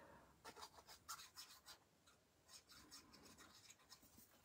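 Near silence with faint rubbing and a few light ticks of paper being handled, as liquid glue from a bottle's tip is applied to a small paper piece.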